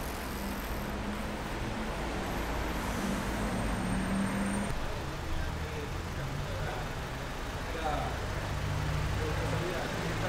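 City street traffic: a steady rumble of vehicles, with one engine holding a steady low note for the first few seconds, and faint voices.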